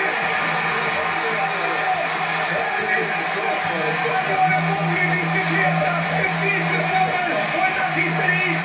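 Background music mixed with a crowd and a commentator's voice from a televised soccer match, played through a television's speaker.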